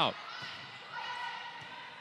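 Faint court sounds of an indoor volleyball rally in a large hall: players moving and the ball being played, with a faint held squeak-like tone through the second half.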